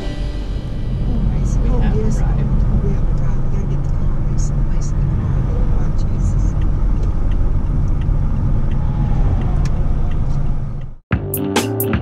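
Steady low rumble of a moving car's road and engine noise heard inside the cabin. It cuts off abruptly about a second before the end, where music with a beat takes over.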